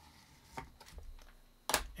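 Faint scraping and light ticks of a pencil tip tracing an arc across nylon fabric laid on a wooden board, then one sharp knock near the end, the loudest sound, as the pencil or a hand meets the board.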